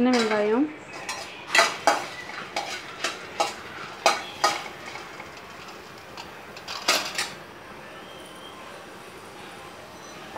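Steel spoon clinking and scraping against a stainless-steel kadai while stirring dried red chillies, whole spices and shallots. The clinks come irregularly, several a second at times, and thin out after about seven seconds.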